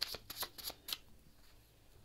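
A deck of handwritten paper oracle cards being shuffled by hand. There is a quick run of light card flicks and taps that stops about a second in.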